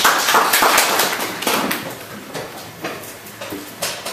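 Audience clapping, dense at first and then thinning to a few scattered claps as it dies away.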